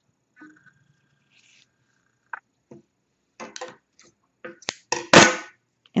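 Handling noise from crocheted yarn work being moved about: near quiet at first, then scattered soft rustles and small knocks that grow louder, the loudest a longer rustle near the end.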